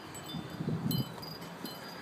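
Wind chimes tinkling, a few short high notes ringing out now and then, over a low rumble of wind on the microphone.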